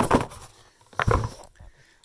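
Phone being handled and set down, picked up against the microphone: a fading rustle, then a single muffled knock about a second in.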